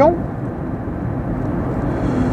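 Steady road and tyre noise inside the cabin of a moving Dacia Spring electric car, with no engine note.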